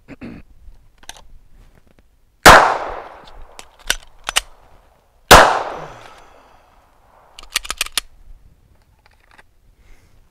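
Two 9mm pistol shots from a Glock 19X, about three seconds apart, each trailing off in echo, with the clicks of a magazine reload between them. A quick run of sharp clicks follows near the end.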